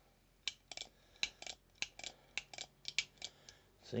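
Heritage Barkeep single-action revolver's hammer being cocked and let down again and again with the cylinder out: a run of light metal clicks, about four a second, some in quick pairs. The action has just been lubricated with CLP and works pretty slick.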